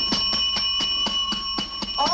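Hotel front-desk call bell struck rapidly and repeatedly, about six or seven hits a second, its bright ring sustained between strikes: someone is impatiently calling for the desk clerk.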